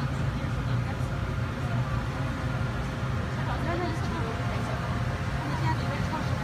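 A ferry's engine running with a steady low drone, under the voices of passengers talking.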